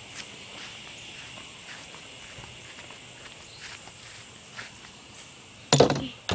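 Footsteps across a grass lawn against a steady high-pitched insect drone, with a loud knock near the end.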